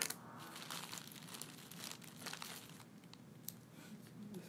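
Close handling noise from a small handheld device being fiddled with: a sharp click, then rustling, scraping and small clicks for a couple of seconds, and one more short click near the end.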